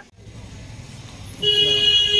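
A vehicle horn sounds once: a loud, steady blare of about a second that starts around a second and a half in, over a low rumble of street traffic.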